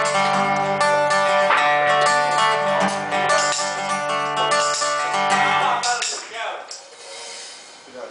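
Live acoustic guitar chords ringing with cymbal, the music stopping about six seconds in. The last two seconds are quieter room noise with voices.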